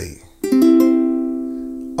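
C major chord strummed once on a C6-tuned ukulele about half a second in, then left to ring and slowly fade.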